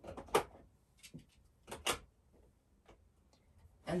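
A handful of light clicks and taps from craft items being handled on a work table, most clustered in the first two seconds.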